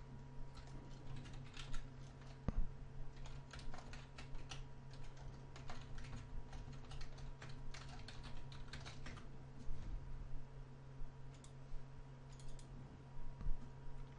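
Typing on a computer keyboard: runs of quick keystrokes with short pauses between them, over a faint steady electrical hum.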